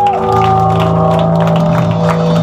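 Live metal band playing loud through amplifiers, with distorted guitars and bass holding a steady, sustained chord.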